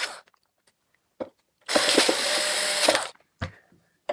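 Bosch cordless electric screwdriver driving a screw into a sheet-metal cover, its motor running steadily for about a second and a half, with small clicks before and after.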